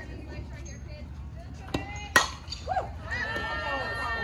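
A softball bat hits a pitched ball with one sharp crack about halfway through, just after a fainter knock. Spectators start shouting and cheering right after the hit.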